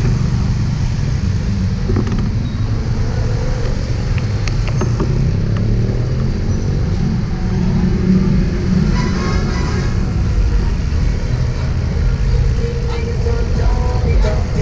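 Steady rumble of city street traffic, cars and a jeepney running close by, as heard from a bicycle riding among them.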